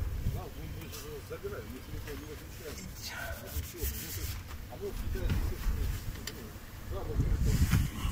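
Strong wind buffeting the microphone in low gusts, strongest near the end, with a plastic bag crinkling as plants are handled.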